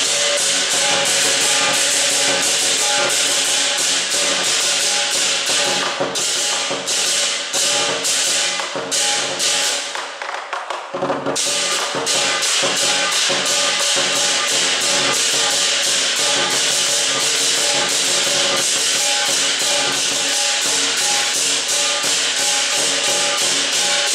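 Lion dance percussion: hand cymbals clashing in a fast, steady rhythm with drum and gong, breaking off briefly about ten seconds in before starting up again.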